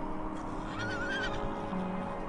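A trotter stallion whinnying once, a short wavering call about a second in, over background music.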